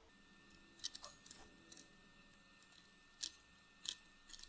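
A scatter of faint, sharp plastic clicks and light rustling: electrical connectors being unplugged from the DFM lifter oil-control solenoids and the wiring harness worked loose by hand.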